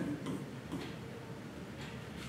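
Quiet room tone with faint light ticking.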